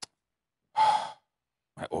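A man's single short, breathy sigh, acted out as the stoic reaction of a man holding back grief.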